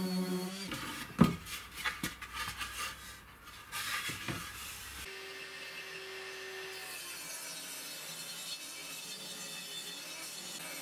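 A handheld orbital sander on a pine panel hums steadily and stops under a second in. A sharp knock about a second in is followed by a few seconds of wooden knocks, scraping and rubbing. After that comes low, steady workshop room tone with faint handling of boards.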